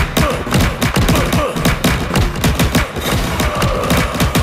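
A rapid, unbroken barrage of cartoon thumps, bangs and crashes, many hits with a short falling pitch.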